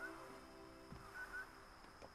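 Soft background music fades out, leaving faint outdoor quiet with two short high chirps near the middle and one soft low thud.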